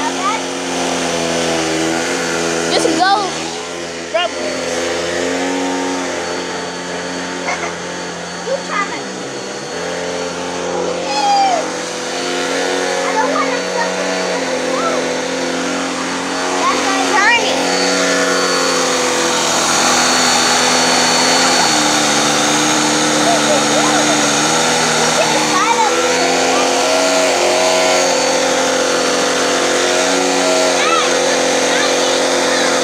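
Upright vacuum cleaner motor running steadily, its hum shifting in pitch a few times, while a baby makes short squeals and coos over it now and then.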